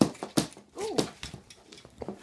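A meerkat making short calls that rise and fall in pitch, among several sharp clicks and knocks.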